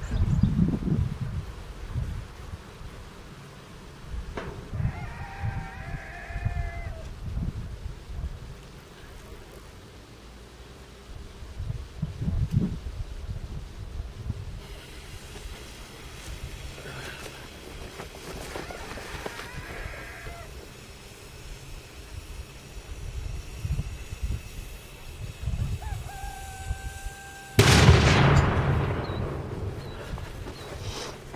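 A single sharp explosion near the end, from an 8-gram charge of homemade aluminium-and-sugar flash-type powder, with a rumble that fades over about two seconds. Before it, low wind gusts buffet the microphone.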